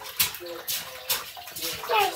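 Water running and sloshing, with a few brief splashing swishes standing out.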